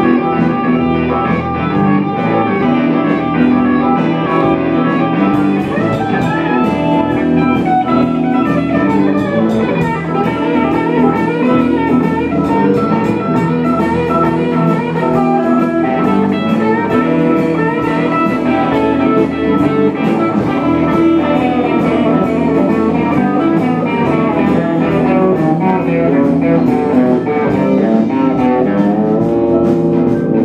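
Live blues band playing an instrumental passage on electric guitars over bass and drums. Cymbal strikes join in about five seconds in and carry a steady beat.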